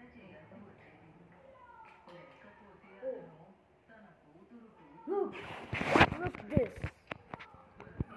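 Faint voices in the room, then from about five seconds in a loud run of knocks, clicks and rustling as the phone recording it is grabbed and moved, with a short voice exclamation among them.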